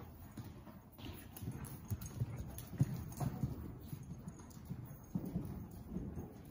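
Hoofbeats of a ridden horse moving over the soft dirt footing of an indoor arena: a run of dull low thuds, a few heavier ones around the middle and near the end.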